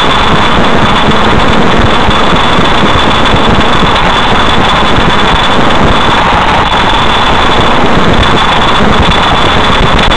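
Steady, loud running noise of a moving car heard from inside the cabin: engine and road rumble, with a thin, high, steady whine on top.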